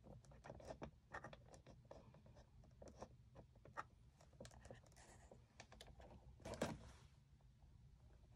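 Faint clicks and scratches from hands handling the boxed action figure's clear plastic window and cardboard packaging, with one louder rustle about six and a half seconds in.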